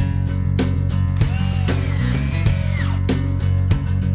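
A DeWalt cordless drill runs into a wooden board for a little under two seconds, starting about a second in. Its motor whine rises and then falls away. Acoustic guitar background music plays throughout.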